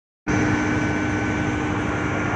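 Steady drone of heavy power-house machinery: a low rumble with a constant hum over it, cutting in abruptly just after the start.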